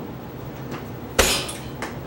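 A single loud, sharp knock on the wooden floor a little past the middle, with a short ringing tail. Fainter ticks come before and after it, as a kick is stepped down and back.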